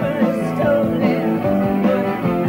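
A rock band playing live: electric guitar over bass and drums, a full and continuous sound with a steady beat.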